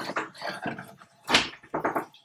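Short scrapes and knocks of hands gathering chopped garlic and ginger off a wooden chopping board and dropping them into a ceramic mortar. The loudest knock comes a little past halfway.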